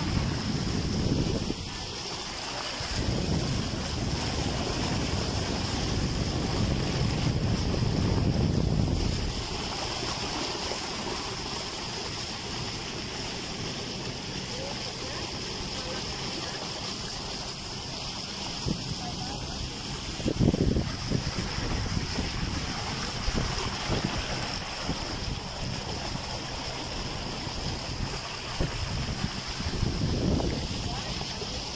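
Wind buffeting the microphone in uneven gusts, loudest about eight seconds in and again around twenty seconds, over a steady rush of water from a boat moving across floodwater.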